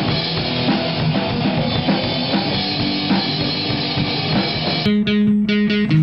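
Live grunge-punk band playing loud, distorted rock: drum kit and electric guitar together. About five seconds in it cuts abruptly to a guitar strumming one chord in even, rapid strokes about five a second.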